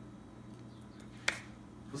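A single sharp click a little over a second in, over a faint steady low hum.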